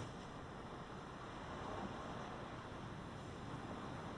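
Faint, steady background hiss of a quiet room, with no distinct sound event.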